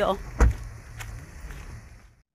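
A single loud, sharp thump about half a second in, then a fainter click about a second in, over a steady low rumble.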